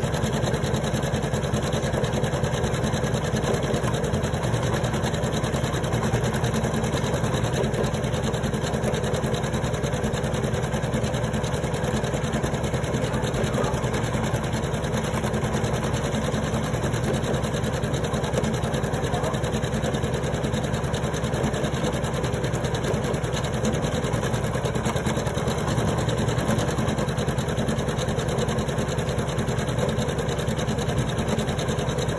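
Computerized embroidery machine running steadily, its needle stitching rapidly and evenly through hooped fabric.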